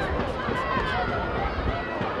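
Spectators' voices: many people shouting and calling over one another in an indistinct babble, with no single clear speaker.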